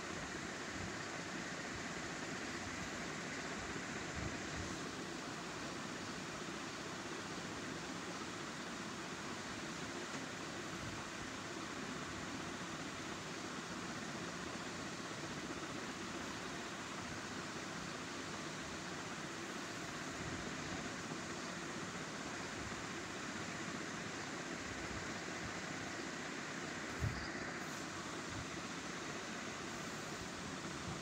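Steady background hiss with no other sound but a single short click near the end.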